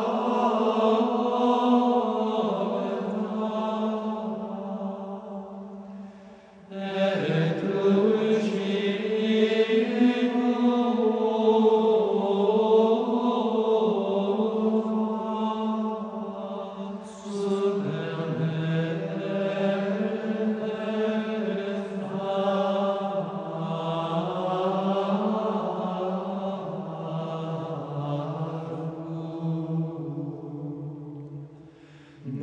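Gregorian chant sung in unison as one melodic line, with short breaks between phrases about seven seconds in and again near seventeen seconds.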